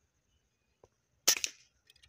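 A single shot from a Rainbow air rifle: one sharp crack about a second in that dies away quickly.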